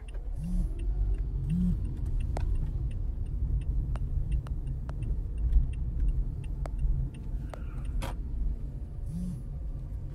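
Car ride, heard from inside the cabin: a steady low engine and road rumble, with a few faint clicks.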